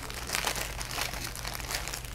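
Clear plastic bag crinkling irregularly as a plastic model-kit sprue is slid out of it.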